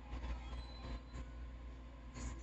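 Quiet room tone: a low steady hum under a faint hiss.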